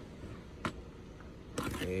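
Quiet room tone with a single light click about two-thirds of a second in, then a man's voice starting near the end.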